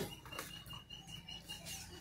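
Quiet background between speech, with a faint, thin, steady high tone that runs for about a second and a half and then stops.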